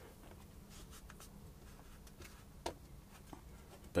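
Faint rubbing and scraping of fingers pressing and smoothing plastiline, an oil-based modelling clay, into gaps in a sculpture, with a few light clicks, over a low steady hum.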